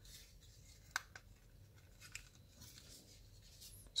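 Hard plastic parts of a Wei Jiang Sabertooth transforming robot toy being folded and fitted together by hand: faint rubbing with a few sharp clicks, the clearest about a second in.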